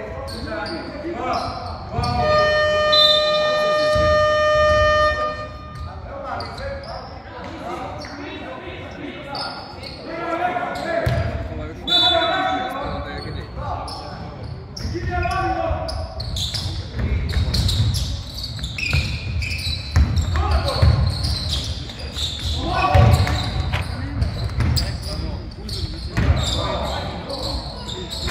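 Scoreboard buzzer in a basketball hall sounding one long steady tone for about four seconds, starting about two seconds in. Around it, a basketball bounces on the hardwood floor and voices echo through the large hall.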